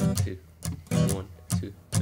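Guitar strumming short chords, a few strokes a second, as the intro of a song.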